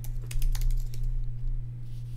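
Typing on a computer keyboard: a quick run of key clicks in the first second, over a steady low hum.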